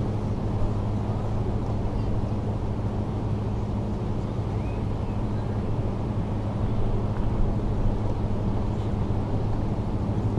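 Steady low hum and rumble with no distinct events.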